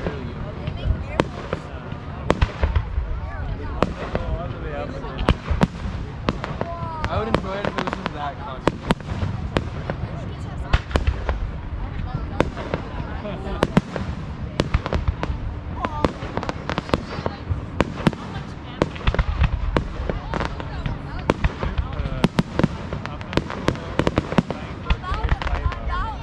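Fireworks display: aerial shells bursting one after another, a dense string of sharp bangs, several a second at times.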